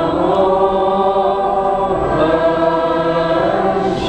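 A choir singing a slow Buddhist chant in long, held notes, the melody moving to new pitches about halfway through.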